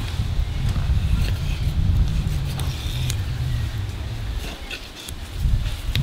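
A low, uneven rumble, dipping about five seconds in, under a few faint ticks and scrapes of a knife cutting the belly flap off a gummy shark fillet on a bench.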